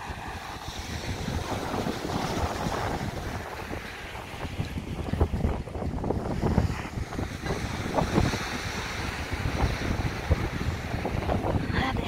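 Strong wind buffeting the phone's microphone in irregular gusts, with surf breaking on the shore underneath.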